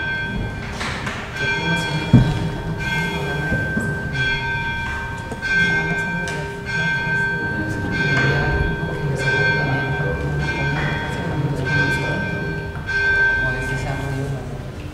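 A bell ringing over and over, struck about once every second or so, each tone ringing on into the next strike.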